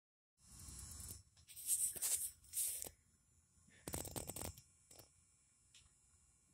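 Scratchy rubbing and rustling of a phone being handled against its microphone, in several short bursts. A faint low rumble of distant thunder sits under the first second.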